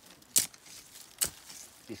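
A machete blade chopping into dry soil twice, about a second apart, each a short, crisp strike.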